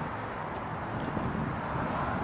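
Steady outdoor background noise, an even hiss with a faint low hum underneath.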